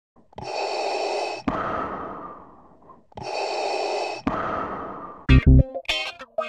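Two identical breath-like noise swells, each stopping suddenly with a click and trailing off, repeated about three seconds apart. Then a rock track with distorted electric guitar and heavy bass hits starts about five seconds in.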